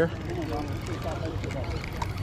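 Faint chatter of people talking nearby over a steady low rumble of background noise.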